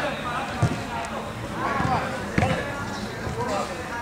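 Players calling out to each other during a small-sided football game, with two sharp thuds of the ball being struck, about half a second in and again a little past the middle.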